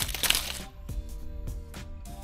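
Dry fallen leaves crackling and crunching underfoot for about the first half-second, then stopping. Soft background music with a few light ticks follows.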